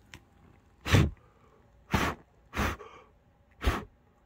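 Four short, sharp puffs of breath blown at a burning solvent-soaked cotton swab, putting the flame out.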